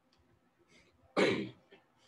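A man clears his throat once, a short, sudden cough-like burst about a second in that fades quickly.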